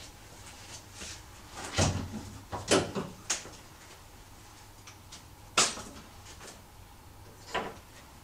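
Hood of a Jeep Wrangler JK being released and lifted open: about five sharp metal clicks and clunks spread over several seconds, the loudest about a third of the way in and again past the middle.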